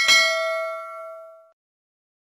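A bright bell-like ding sound effect, struck once at the start, rings with a few clear tones and fades out over about a second and a half.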